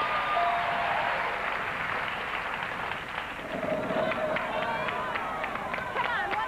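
Studio audience applauding as the letters light up on the puzzle board, with a short chime near the start. About halfway through, a run of quick clicks and voices from the crowd join in.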